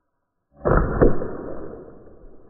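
A Byrna SD CO2-powered launcher firing a pepper-ball projectile that bursts on the target, leaving a cloud of irritant powder: a sudden loud report about half a second in, a second sharp crack about half a second later, then the sound trails off.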